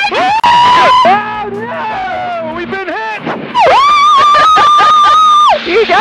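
A woman shouting and screaming in triumph: a short yell near the start, then one long, high scream of about two seconds in the middle.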